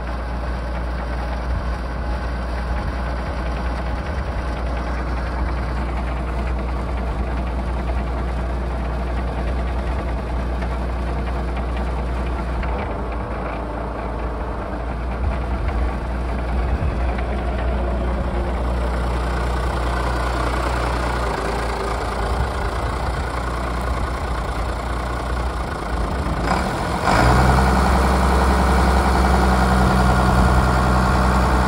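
Case IH 7110 tractor's six-cylinder Cummins diesel idling steadily, growing louder near the end.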